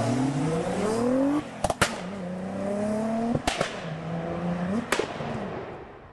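Car engine accelerating hard through the gears: its note climbs in pitch three times, each upshift marked by a sharp crack, then fades away near the end.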